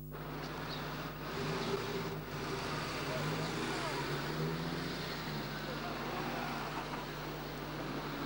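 Steady hiss and low hum, with faint, indistinct voices murmuring in the background for the first few seconds.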